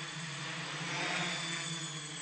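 ArduCopter quadcopter's motors and propellers running steadily in flight, a continuous hum that swells slightly about a second in.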